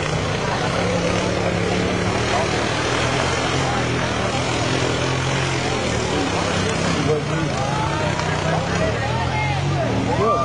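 ATV engines running as the quads churn through a mud pit, with the engine note shifting a little midway, under a crowd of spectators talking.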